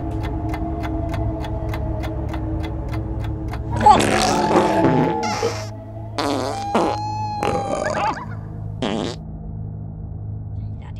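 Recorded farts from a novelty fart CD, starting about four seconds in: one long wavering fart, then several shorter blasts. They play over background music with a steady ticking beat.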